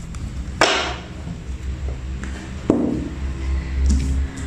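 Quiet background music with a steady low hum, broken by two short taps as cards are handled on the table: one about half a second in and one near three seconds.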